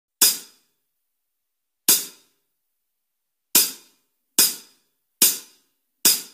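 Hi-hat count-in: five short, bright clicks, each dying away quickly. The first two are slow and the last three come faster, counting in the song.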